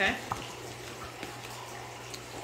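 A woman's voice briefly says "okay?", then a steady low hum with faint hiss of room background noise.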